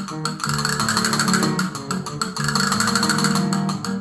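Castanets played in fast clicking strokes and rolls over an instrumental accompaniment of held pitched notes.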